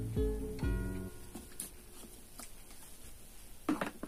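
Background music of plucked guitar notes over a bass line, which stops about a second in; after that only a couple of faint clicks.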